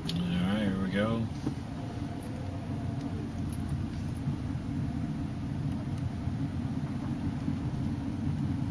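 Steady low rumble of a car's engine and tyres on a gravel road at low speed, heard from inside the cabin. A brief wavering voice-like tone sounds in the first second or so.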